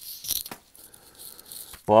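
CD packaging being handled and swapped: a rustle with a few light clicks, then a man's voice starting to speak near the end.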